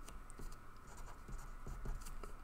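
Felt-tip marker writing on paper: faint, short scratching strokes as words are written out.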